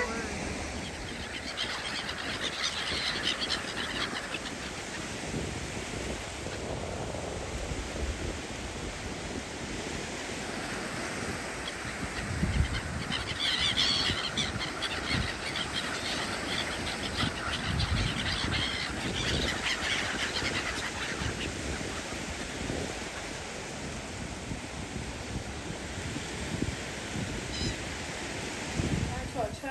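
A flock of gulls calling in bursts, loudest about a dozen seconds in, over a steady bed of low rumbling noise.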